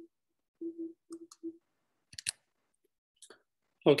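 Choppy, broken snatches of a steady low tone from the tail of a screen-shared video's soundtrack, then two or three sharp computer mouse clicks about two and three seconds in as playback is stopped.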